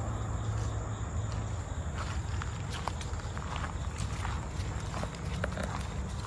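Footsteps on a gravel path strewn with dry leaves, coming as quick irregular steps from about two seconds in, over a steady low rumble.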